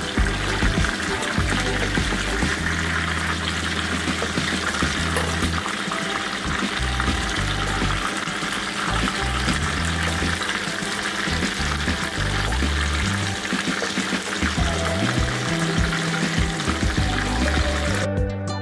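Marinated pomfret frying in a pan of hot oil, sizzling steadily, with background music and its bass notes playing over it.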